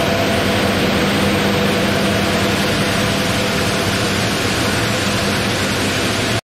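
Granite block-cutting saw running through a granite block under a water spray: a loud steady machine hum with a low drone and a constant hiss of cutting and water.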